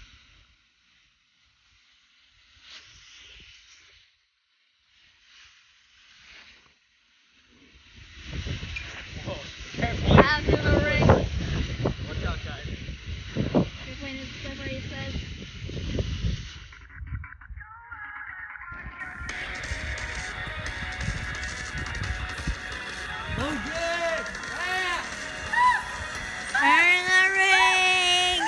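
Near silence at first, then from about eight seconds in, thumps and rustling of feet on a backyard trampoline mat. From about nineteen seconds in, music plays with a voice over it.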